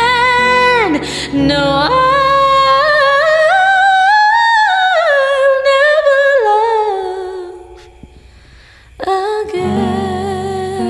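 A woman sings a long, drawn-out ballad line over electronic keyboard accompaniment, her voice climbing to a high point and falling back. The voice fades away about eight seconds in and comes back in with the keyboard about a second later.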